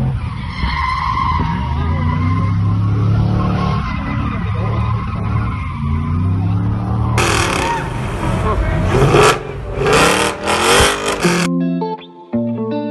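A car engine held at high revs, its pitch shifting, then tyres skidding and squealing in loud surges for the last few seconds before the sound cuts to music.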